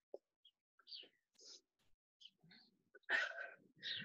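Mostly quiet, with a faint click and small rustles, then about three seconds in a loud, breathy exhale from a man getting his breath back after a hard set of exercise.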